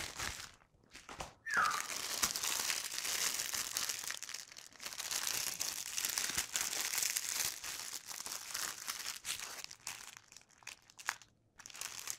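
Clear plastic packaging of a diamond-painting kit crinkling as it is handled, steady and dense from about a second and a half in until about ten seconds in, then a few scattered rustles.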